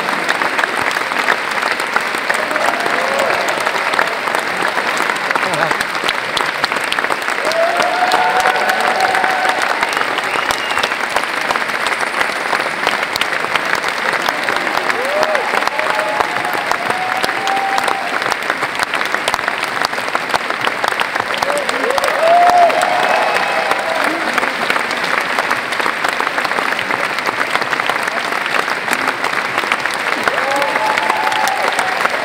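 Large theatre audience clapping in a long, steady ovation, with a few scattered voices calling out over the clapping.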